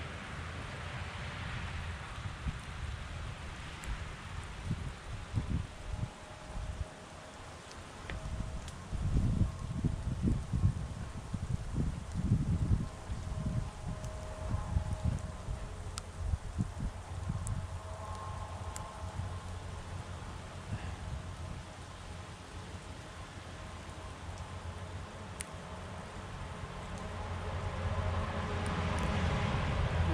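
Road traffic noise: a steady low rumble of vehicles on a nearby road, with gusty rumbling bursts on the microphone in the middle and a vehicle growing louder as it approaches near the end.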